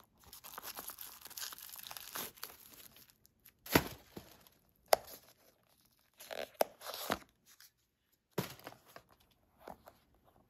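Tissue paper rustling and crinkling inside a leather loafer as the shoe is handled: a continuous rustle for the first few seconds, then shorter bursts with a few sharp knocks as the shoe is turned over.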